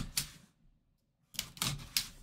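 A blade slitting the tape seal on a cardboard box, heard as short sharp scraping clicks: one stroke at the start and a quick cluster of several in the second half.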